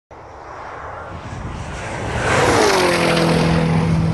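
A car passing at high speed: a rush of engine and road noise builds, and about two and a half seconds in the engine note drops in pitch as the car goes by, then holds steady.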